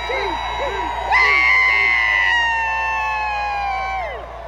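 Vintage fire engine's mechanical siren sounding over a cheering crowd. It swells loudly about a second in, then winds slowly down in pitch and falls away sharply near the end.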